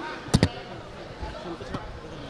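Two sharp knocks in quick succession, then a fainter one near the end, over the chatter of a close crowd.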